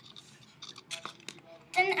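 A few faint clicks and taps of a small plastic cup of lotion being handled on a tiled counter. A child's voice starts near the end.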